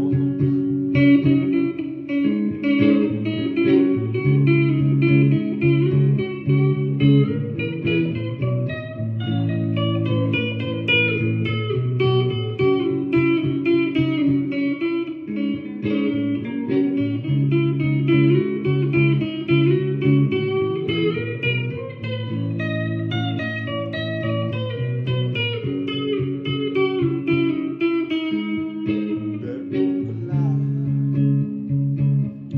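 Electric guitar played solo, picking out chords and single notes in a continuous instrumental passage of a song.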